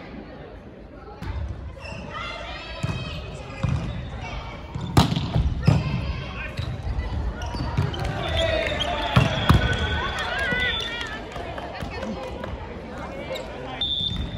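Volleyball rally in a sports hall: the ball is struck several sharp smacks apart, two close together about five seconds in and two more just after nine seconds, ringing in the large room. Players' voices and shouted calls run underneath.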